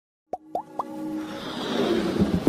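Intro sound effects for an animated logo: three quick rising plops about a quarter second apart over a held synth tone, then a whoosh swelling up.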